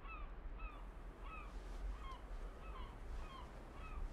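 Gulls calling: a steady run of short, curving calls, about three a second, over a faint low rumble.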